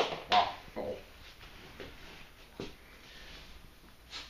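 A disposable plastic syringe being handled: two sharp plastic snaps in the first half second, then a few fainter clicks and a light rustle.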